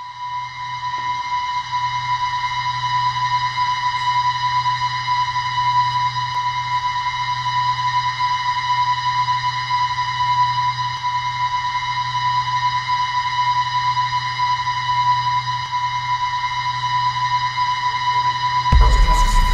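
Horror-film sound design: a sustained, high-pitched ringing tone over a low drone, swelling in over the first couple of seconds and then holding steady without change.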